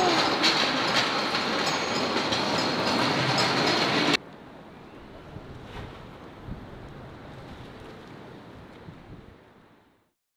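Loud, steady background noise with scattered clicks and clatter that cuts off abruptly about four seconds in. A much quieter distant ambient hum follows and fades out to silence.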